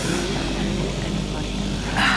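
A steady low rumbling drone with a faint voice over it.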